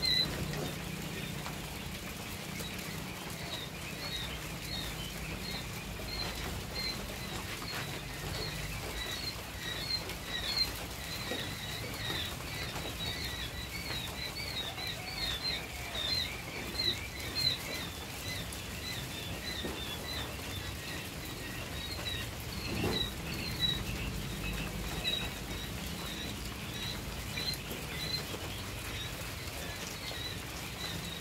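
Many quail chicks peeping: a continuous chorus of short, high chirps, with a low steady hum underneath.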